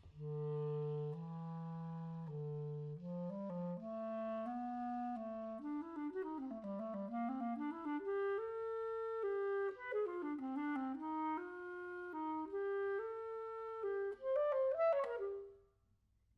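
Buffet Crampon RC Prestige clarinet playing an unaccompanied phrase. It opens on long low notes, climbs and winds through a melodic line, and ends with a quick run upward before stopping.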